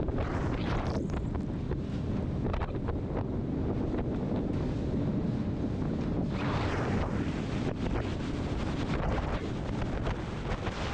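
Strong storm wind buffeting the microphone of a powerboat running through choppy water, over a steady rumble of the hull and waves. A louder rush of splashing spray comes about two-thirds of the way through.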